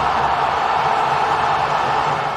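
Steady rushing noise of an intro sound effect, even in level and without any clear pitch or beat.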